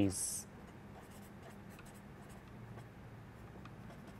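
Pen writing on paper: faint, short scratching strokes as letters are written, following the tail of a spoken word at the very start.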